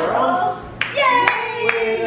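A few sharp hand claps in the second half, over cheering, sing-song voices.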